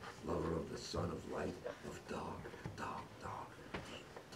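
A man's voice making short, wordless vocal sounds and whispers in broken bursts.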